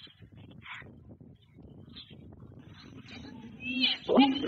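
Many sardines flopping on wet pavement, a faint scattered patter of small slaps, with a voice starting near the end.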